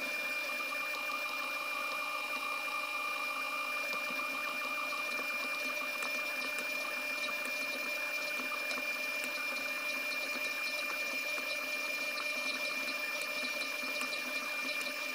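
Electric stand mixer running steadily, its dough hook kneading bread dough on low speed, with an even motor hum and a thin high whine.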